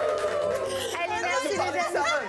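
Several voices talking over one another, with music underneath.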